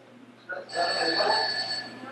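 A telephone ringing: one steady, high-pitched ring lasting about a second, starting partway in.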